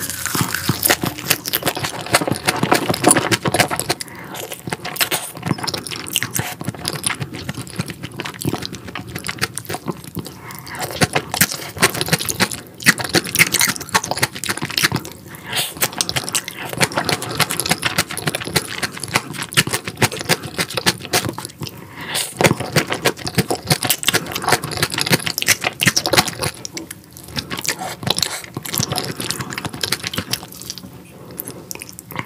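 Close-miked chewing and crunching of a spicy raw-fish salad with crisp shredded vegetables: dense, continuous wet crunches with a few brief pauses between mouthfuls.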